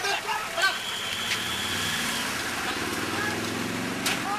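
Truck engine running steadily, with crowd voices and shouts in the first second and a high steady whistle-like tone lasting about a second and a half.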